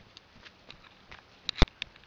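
Scattered sharp clicks and ticks, then a quick cluster of louder clicks with one hard knock about one and a half seconds in.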